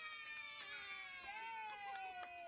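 High-pitched, long-drawn vocalising of young children, slowly falling in pitch, with a few light claps or taps.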